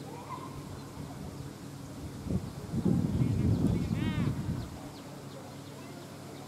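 Outdoor ambience with a gust of wind rumbling on the microphone for about two seconds in the middle. A bird calls in a quick run of notes about four seconds in, and faint distant voices can be heard.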